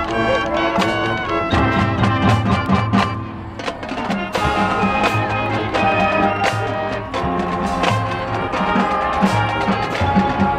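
Marching band playing live: brass horns sounding sustained chords over a steady drumline beat.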